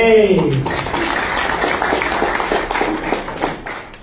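Audience applauding: dense, loud clapping that starts about half a second in, right after a man's shouted line, and dies down near the end.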